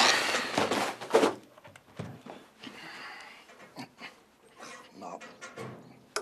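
Paper rustling as stacks of files are shuffled and tossed, loudest in the first second. A man's heavy breathing and small effort noises follow, with scattered light knocks and clicks of handled objects.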